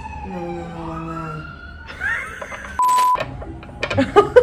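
A man's long, drawn-out cry of pain sliding down in pitch, then a brief rising yelp. About three seconds in comes a short steady censor beep.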